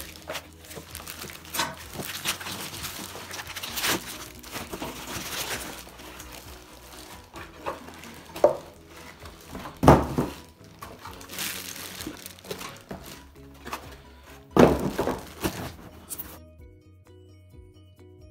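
Plastic film rustling and crinkling as it is cut and pulled off a cardboard box, with knocks and thumps from handling the box, the loudest about ten seconds in and near fifteen seconds. Soft background music runs underneath and is heard alone for the last second or two.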